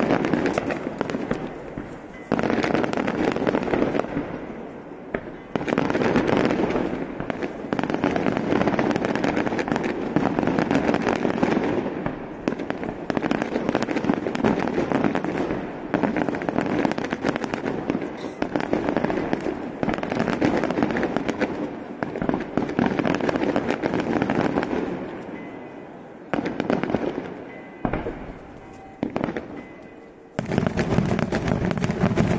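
Daytime fireworks display: a dense, near-continuous barrage of rapid firecracker bangs and crackling. It eases off briefly a couple of times and thins out near the end.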